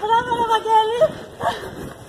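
A dog giving a long whining cry of about a second that slides up at its end, then a shorter yelp.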